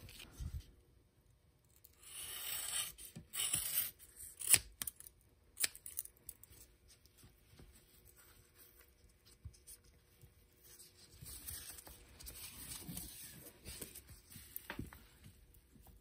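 Woven exhaust heat wrap being handled and wound around a stainless tubular turbo manifold: intermittent rough rustling and scraping of the coarse fabric. It is loudest about two to four seconds in, with a few sharp clicks around five seconds and softer scraping later on.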